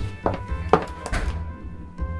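Footsteps, about two a second, that stop around two-thirds of the way through, over background music.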